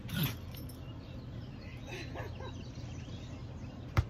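A basketball with a beer can balanced on top, dropped onto a concrete sidewalk, hitting the ground once with a sharp thud near the end.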